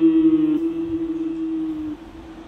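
Final held note of the hymn's instrumental music ringing out. Its lower part drops away about half a second in, and the rest fades by the end.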